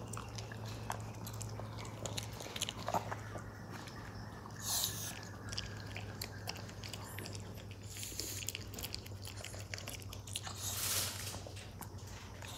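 Small dog (Maltese) gnawing and chewing a dog chew, with irregular wet clicks and crunches from its teeth. There are two short hissy bursts, about five seconds in and again near the end, over a steady low hum.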